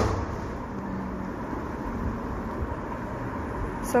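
Steady low background noise with a faint hum, with no clear event in it; a woman's voice starts again right at the end.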